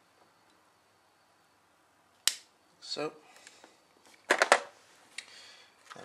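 Small flush cutters snipping through thin 0.45 mm wire: one sharp click about two seconds in.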